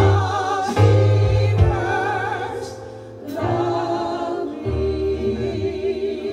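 Live gospel worship music: women's voices singing with vibrato, carried over sustained keyboard chords and low bass notes. The sound thins briefly about halfway through, then the voices come back in.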